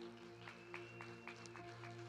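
Quiet background music: a soft chord held steadily, with a few faint scattered hand claps.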